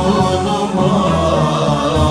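Men's voices singing a Turkish Sufi naat in makam Hüzzam, a slow chanted melody with some notes held steady beneath others that move.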